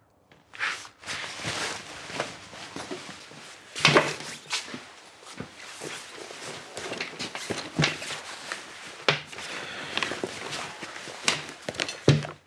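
Footsteps on a hard floor and rustling handling of a cloth handbag, with a sharp knock about four seconds in and scattered clicks as the bag is opened and its contents are searched.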